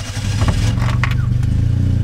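Zastava Yugo's small four-cylinder engine running, heard inside the cabin, getting louder about half a second in and then holding steady, with a couple of short clicks.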